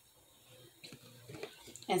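Quiet room tone with a few faint, soft sounds, then a woman's voice begins right at the end.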